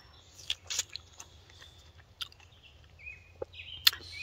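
A person chewing a bite of ripe strawberry, heard as soft, scattered wet mouth clicks. The loudest click comes just before the end.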